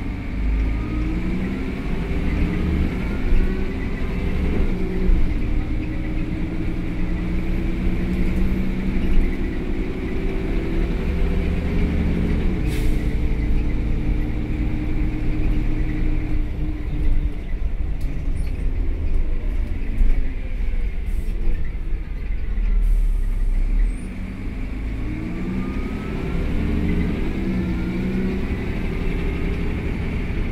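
Inside a Karosa B931E city bus under way: the engine and drivetrain drone climbs in pitch as the bus accelerates for about twelve seconds. It then drops away as the bus eases off and rolls, and climbs again in the last few seconds.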